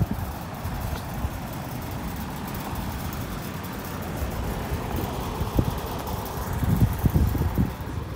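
Outdoor Nordyne central air conditioner condenser units running: a steady hum of fan and compressor, with wind buffeting the microphone in gusts, heaviest in the second half.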